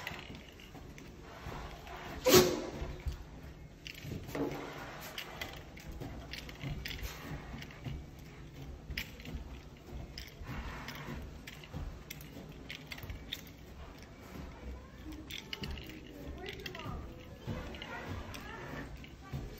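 A Shiba Inu's body sliding over carpet as it is dragged on its leash, with light clinking from the harness hardware. A sharp, louder sound stands out about two seconds in.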